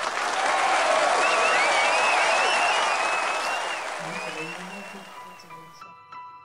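Crowd cheering and applause sound effect with a high wavering whistle over it, starting suddenly and fading out over the last two seconds.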